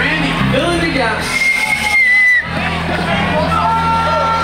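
A live punk band plays amplified in a club, with voices singing and shouting over steady low instrument notes. A single high tone holds for about a second in the middle, then cuts off.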